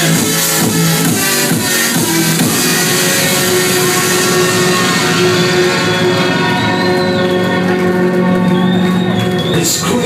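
Drum and bass played loud by a DJ through a club sound system. A driving beat gives way after about two seconds to a breakdown of held synth notes, with the highs fading out, and a sharp full-range hit comes just before the end.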